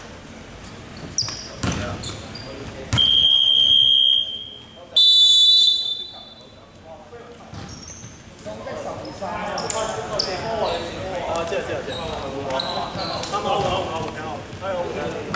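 Two long referee's whistle blasts in a gym: a steady high tone about three seconds in that lasts over a second, then a shorter, higher one about two seconds later. A basketball bounces on the hardwood floor just before them.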